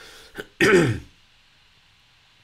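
A man clears his throat once, a short, loud rasp with a falling pitch about half a second in.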